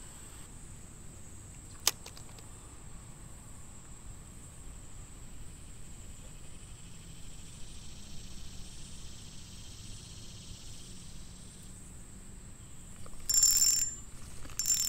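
Spinning reel cranked slowly during a retrieve, with a single sharp click about two seconds in. Near the end the reel's drag gives line in two short, loud buzzing bursts as a fish strikes and pulls.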